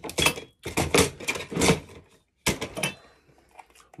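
Steel hand tools and kit being handled and set down, clattering and rattling in four short bursts with short pauses between.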